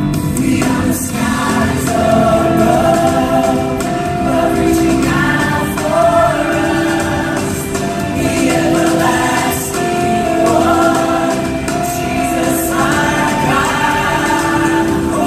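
Live contemporary worship music: a choir and worship singers sing long, held phrases over a full band accompaniment.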